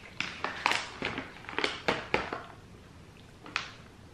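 Close-up crunching of dark-chocolate-covered almonds being chewed: a quick run of crisp crunches over the first two and a half seconds, then one more near the end.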